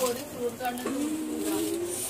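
A person's voice speaking, with no words picked out, ending in a long drawn-out note that rises slightly over the last second.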